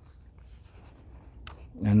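Faint rustle of paper as a page of a large paperback drawing book is turned by hand.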